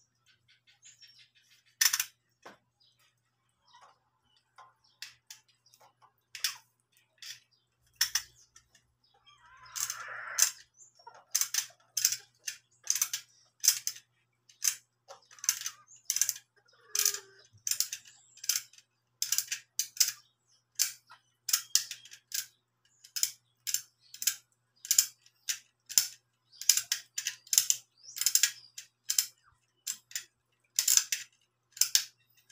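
Short, sharp clicks of a utility knife blade shaving a small white cue-stick ferrule held in the hands. The clicks come scattered at first, then settle into about two strokes a second.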